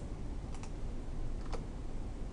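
A few key clicks on a computer keyboard, in two quick pairs about a second apart, over a faint steady low hum.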